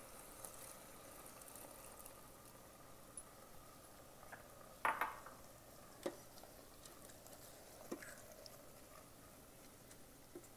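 Wooden spoon stirring split moong dal into frying tomatoes and onion in a stainless steel Instant Pot insert, with a few knocks and scrapes against the pot, the loudest about five seconds in and others near six and eight seconds. Under it a faint steady sizzle.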